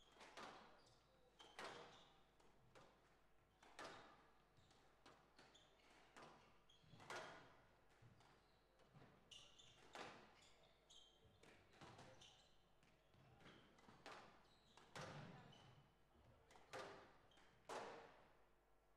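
Squash ball being hit back and forth in a rally: a sharp knock of racket strings and ball on the walls about every second or two, with short squeaks of court shoes on the wooden floor between shots.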